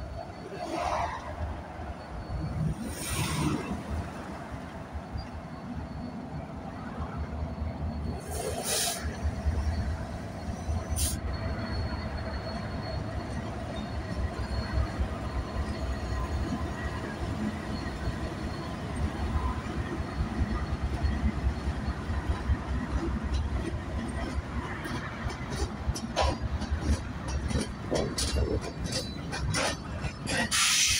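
Diesel freight locomotives, a Ferromex EMD SD70ACe leading BNSF GE C44-9Ws, rolling slowly past with a steady deep engine rumble and the sound of steel wheels on rail. A few short hisses come in the first ten seconds or so, and a quick run of clicks near the end.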